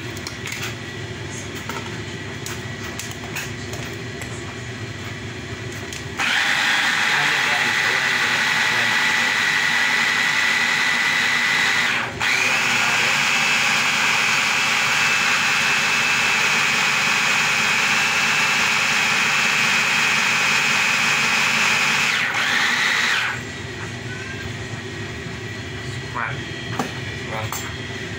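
Electric hand blender on a beaker jug running, blending milkshake into a banana and protein paste: a high, steady motor whine starts about six seconds in. It cuts out for a moment, restarts a little higher in pitch, and stops again a few seconds before the end.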